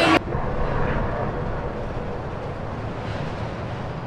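A steady rumbling noise with a hiss, starting abruptly after a cut and slowly fading.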